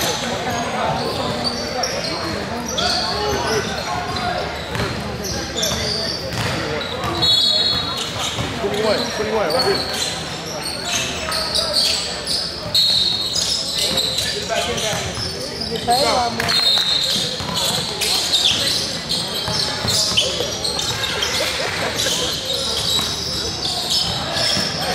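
Basketball game play in a gymnasium: a ball bouncing on the hardwood court with repeated sharp knocks, sneakers giving short high squeaks, and indistinct voices of players and spectators, all echoing in the large hall.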